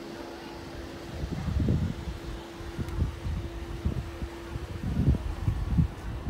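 Wind buffeting the phone's microphone in irregular low rumbling gusts, over a steady low hum.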